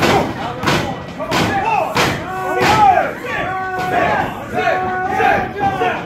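Wrestling crowd shouting and yelling in a small hall, with about four sharp impacts roughly 0.7 s apart in the first two seconds, then rising-and-falling shouts.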